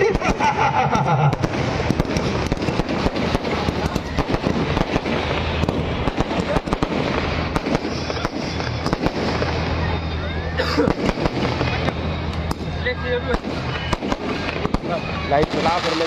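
Fireworks and firecrackers going off: a dense, continuous crackle of many sharp bangs in quick succession.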